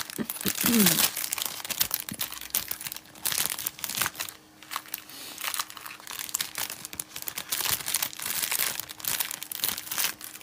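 Crinkling and rustling of packaging being handled, in dense irregular crackles.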